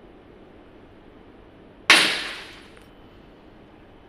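A thin glass film strip snapping under bending load in a testing machine's fixture: one sharp crack about two seconds in, dying away within about a second.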